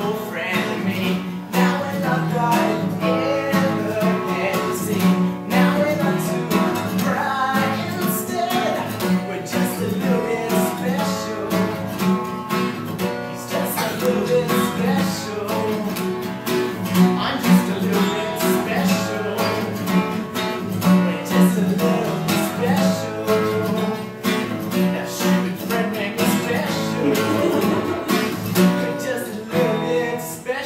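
Acoustic guitar strummed in a steady, even rhythm.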